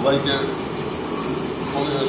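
A man's voice breaks off right at the start, then a steady hiss of background noise fills a pause in his speech.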